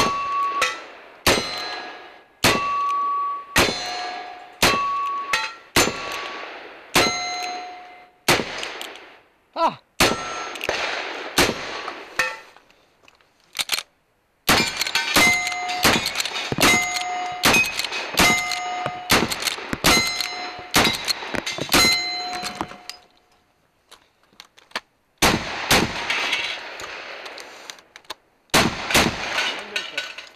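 A rapid string of black-powder gunshots from a revolver and then a rifle, each shot followed quickly by the ringing clang of a steel target being hit. There are two short pauses between runs of shots.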